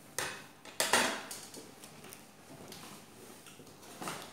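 Plates and cutlery knocked on a table: two sharp knocks near the start, under a second apart, then faint light clicks of handling.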